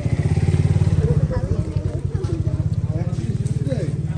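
An engine running steadily close by, with a fast, even pulse, a little louder in the first second or so.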